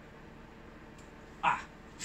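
Quiet room tone, broken about one and a half seconds in by a single short voiced cry.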